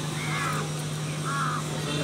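A crow cawing twice, two short calls about a second apart, over a steady low hum.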